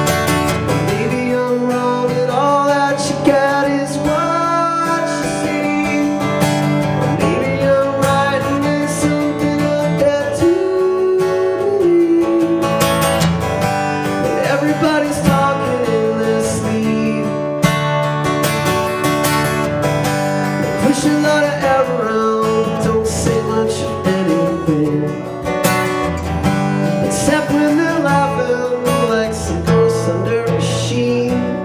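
Acoustic guitar strummed steadily in a live solo song, with a man's wordless sung melody over it.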